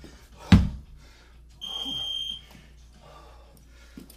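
A 32 kg kettlebell dropped to the gym floor with a heavy thud. About a second later there is one long, high-pitched electronic beep.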